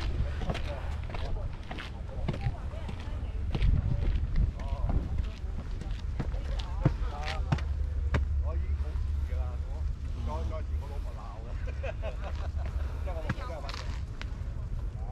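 Footsteps on concrete stair steps, with a steady wind rumble on the microphone and people talking in the background at several points.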